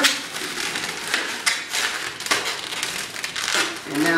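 Latex twisting balloons rubbing and scraping against each other as a long black balloon is twisted and wrapped around a cluster of yellow balloon bubbles, giving a string of irregular scratchy rubs and creaks.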